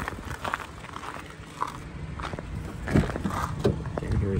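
Footsteps on packed snow, a handful of uneven steps.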